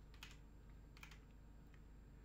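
Near silence: low steady room hum, with two faint short clicks about a quarter second and a second in.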